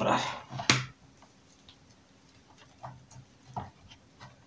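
A voice trails off with a sharp click, then it goes near quiet with a few faint, brief handling sounds as bonsai training wire is wound around a pine's trunk.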